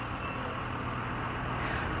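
School bus engine running, a steady low hum with road noise that grows slightly louder near the end.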